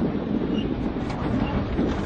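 Rally car's engine and tyre and road noise heard from inside the cabin at speed on a tarmac stage, a steady loud rumble.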